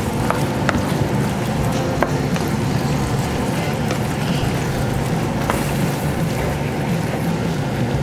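Thickened mushroom and port sauce simmering in a pan with a steady sizzling hiss. A wooden spoon stirs chunks of beef tongue through it, tapping lightly against the pan a few times.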